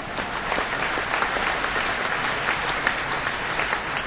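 A crowd applauding: dense, steady clapping that swells slightly at the start.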